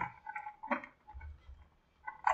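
Faint scattered clicks and handling noises from a window being opened, with one brief louder knock or rub a little under a second in.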